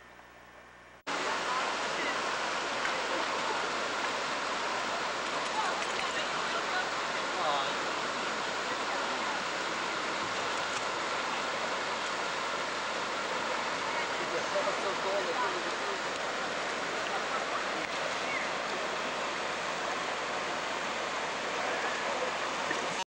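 Shallow stream water rushing steadily over a rocky bed. The loud, even rush starts abruptly about a second in.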